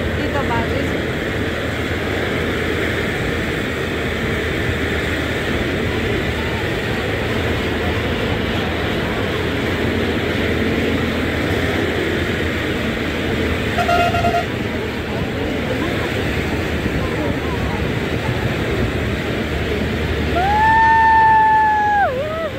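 Steady running and road noise from a moving vehicle heard from inside at an open window. A short horn toot about two-thirds of the way in, and a longer horn blast near the end that rises in pitch, then holds.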